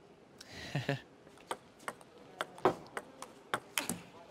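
Table tennis ball clicking sharply off the table and bats in a quick run of strikes about a third to half a second apart, one louder crack near the middle.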